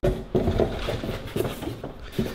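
A long cardboard box being opened by hand, with irregular rustling, scraping and small knocks from the cardboard flaps and the plastic-wrapped part inside.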